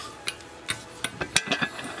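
Light metallic clicks and clinks of a steel socket against a freshly seated water pump bearing and the aluminium engine cover, a few separate taps spread through the moment.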